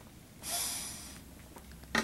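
A single short breath through the nose, like a sniff or snort, about half a second in and fading within a second, over a faint low room hum.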